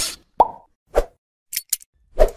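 Animated logo sound effects: a quick string of short, separate pops and clicks, one with a brief pitched tone, a few in two seconds.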